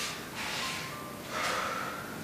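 A young woman's heavy breathing: two loud breaths, about a second apart.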